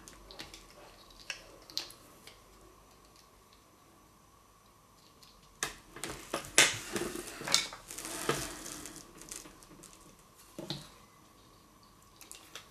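Small plastic shaver parts handled and pried at by hand with a small metal tool. A few light clicks at first, then a quiet stretch, then a run of clicks and scraping from about halfway through.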